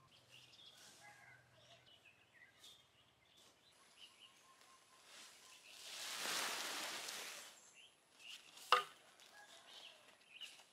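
Large black plastic ground-cover sheet rustling and scraping as it is lifted and dragged, a swell of rushing noise lasting about two seconds from about halfway through, followed by a single sharp click. Faint bird chirps and a thin, steady high insect-like tone sit underneath.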